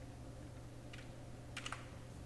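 Faint typing on a computer keyboard: a single keystroke about a second in, then a quick few keystrokes near the end.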